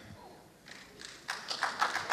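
A brief lull in room tone, then from about a second in a quick, irregular run of sharp taps that grows louder toward the end.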